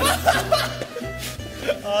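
Several young men laughing together over background music with a steady, stepping bass line.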